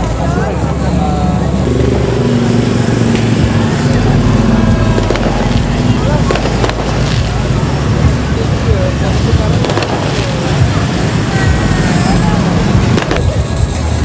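Busy street crowd: many people talking at once over the running engines of motorbikes and cars in slow traffic.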